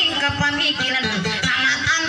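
A voice chanting a song in a half-spoken, sung style over a steadily strummed acoustic guitar, as in a Maranao dayunday duet.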